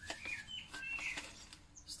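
Songbirds chirping in the background: a few short, high chirps in the first second or so.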